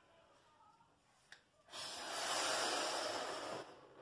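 A man blowing a breath into a balloon to inflate it: about two seconds of rushing air that begins a little before halfway in and fades out near the end, after a tiny click.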